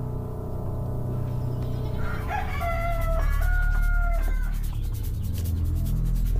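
A rooster crows once, a single long call of about two seconds that begins about two seconds in, as a soft music cue fades out.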